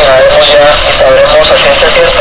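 A voice talking on an AM radio news broadcast, loud and harsh, with a narrow, distorted sound.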